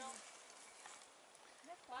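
Near silence, then near the end a faint, distant human voice calling out.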